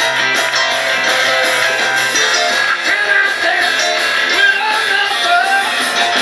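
A live band playing rock and roll, with guitar to the fore, loud and without a break.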